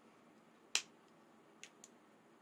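A single sharp finger snap about three-quarters of a second in, followed near the end by two fainter clicks in quick succession.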